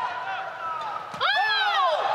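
Court shoes squeaking on the badminton court floor during a rally, then a loud exclaimed "Oh" a little over a second in as the rally ends.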